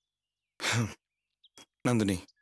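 A man's short, breathy sigh with some voice in it, about half a second in. Another short voiced sound starts near the end.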